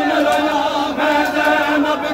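Male voices chanting a noha, a Shia mourning lament, holding one long drawn-out note.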